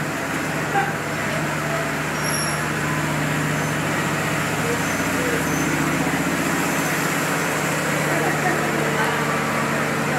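Steady low drone from a standing diesel passenger train, running without change, with a faint murmur of voices underneath.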